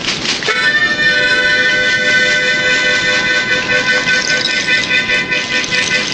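Harmonica holding one long chord that starts about half a second in and ends shortly before the end.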